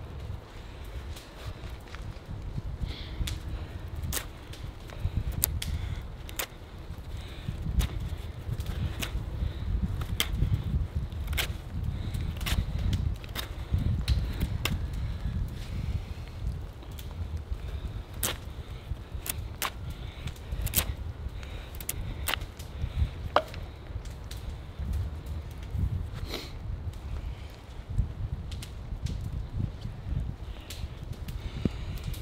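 A heavily modified British MOD survival knife chopping hard pine, an axe's job done with a knife. It gives a long run of sharp wooden chops, irregular and roughly one a second, over a low rumble.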